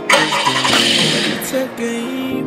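A car engine starting, a noisy burst lasting about a second and a half, over background music with a sung melody.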